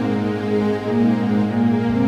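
Slow instrumental keyboard music, with held notes over a steady bass, played on a Yamaha PSR-S550 arranger keyboard.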